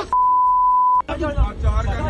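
A steady 1 kHz censor bleep lasts about a second, masking abusive language. It is followed by people's voices from the raw footage.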